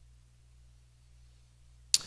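Near silence: room tone with a faint steady low hum, ended near the end by a single sharp click just before speech resumes.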